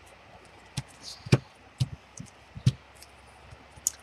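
Hands pressing and smoothing a folded paper flap down onto a tabletop: about six sharp taps and knocks, the loudest about a third of the way in, with a faint rustle of paper.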